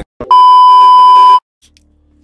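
A single loud, steady electronic beep lasting about a second, cutting off abruptly.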